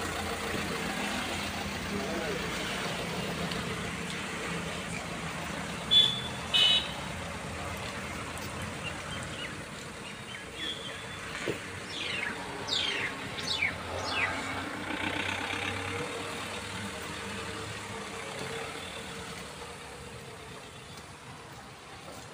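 Tata Harrier SUV's diesel engine running at a steady low idle as the car pulls away, growing fainter toward the end. Two short high-pitched sounds come about six seconds in, and a run of quick falling chirps around twelve to fourteen seconds.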